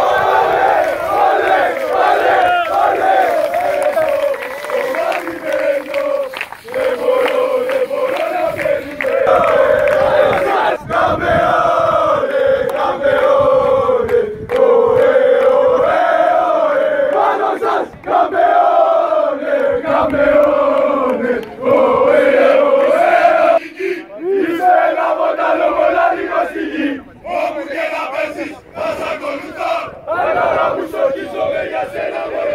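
A crowd of young men chanting a football celebration song together in unison, loud and continuous, with a few brief breaks.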